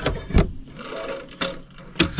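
Hands working at an embroidery machine while it is rethreaded: a knock near the start and a louder one about half a second in, then light rubbing and scraping of thread and fabric.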